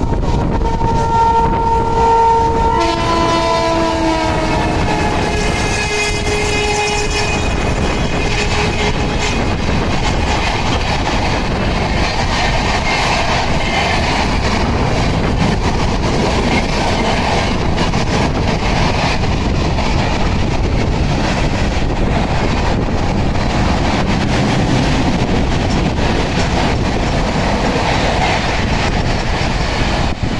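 An Indian express train's locomotive horn sounding repeatedly as it overtakes on the next track, its pitch dropping as it draws past. After about eight seconds comes a steady rush and clatter of the express's coaches running alongside a moving train at speed.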